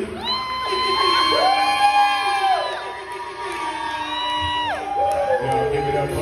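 Voices singing long held notes that slide up and down at their ends, over music and the sound of a crowd in a large room.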